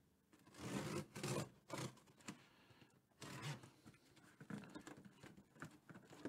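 Packing tape being cut and torn from a heavily taped cardboard box, with cardboard scraping, in several rasping bursts.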